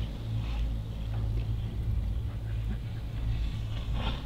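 Steady low rumble of a moving chairlift ride, heard through a chair-mounted camera's microphone.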